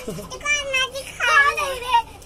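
A girl's high-pitched voice in two short bursts, the second louder and falling in pitch.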